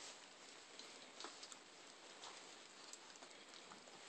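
Near silence: a faint steady hiss with a few faint, scattered clicks.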